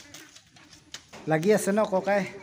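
A few faint clicks and knocks. Then, a little over a second in, a low-pitched voice starts and runs on, much louder.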